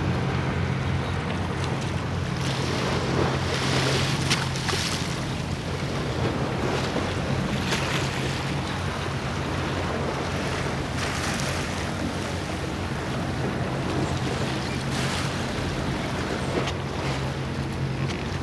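A boat's engine running steadily as a low hum, under rushing water and wind buffeting the microphone, with stronger gusts every few seconds.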